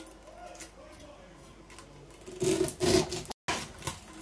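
Kitchen knife cutting the wet flesh off the base of a pineapple crown and scraping on a stainless steel plate. It is quiet at first, then two short, louder cuts or scrapes come near three seconds in.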